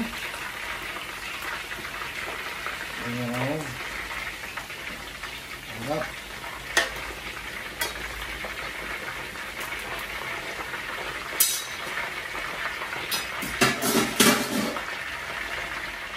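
Whole pork leg deep-frying in hot oil in a large aluminium wok: a steady sizzle and bubbling of the oil, with occasional sharp clinks and scrapes of a metal slotted spoon against the meat and the wok, most of them near the end.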